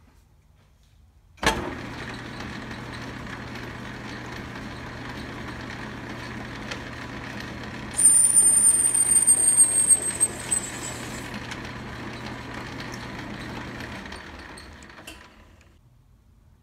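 A 10-inch Logan metal lathe switched on about a second and a half in and running steadily, with a high-pitched squeal, slightly falling in pitch and the loudest part, for about three seconds around the middle as the threading tool takes a light spring pass on a 14 TPI aluminium thread. Near the end the lathe is switched off and its hum fades as it spins down.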